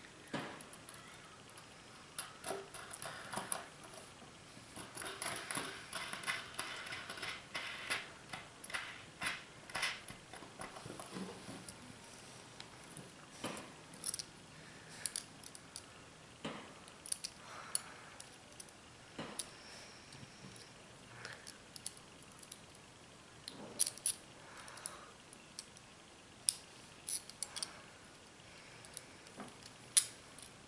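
Small metal construction-set parts (perforated strips, long screws and nuts) clinking and clicking as they are handled and fitted together. The clicks come irregularly, thickest about five to ten seconds in.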